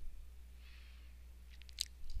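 Quiet room tone with a steady low hum, and a quick cluster of faint computer mouse clicks near the end.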